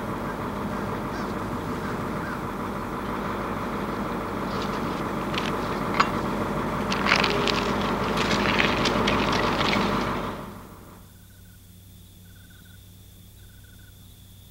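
Street sound with a truck engine running, slowly growing louder, with a few sharp clanks. About ten seconds in it fades down to quiet room tone, with a faint short beep repeating about once a second.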